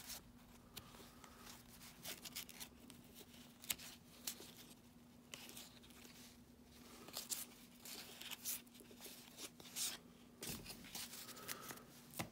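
Baseball trading cards flipped through by hand, cardstock sliding and flicking against the stack in soft, irregular clicks and rustles, over a faint steady low hum.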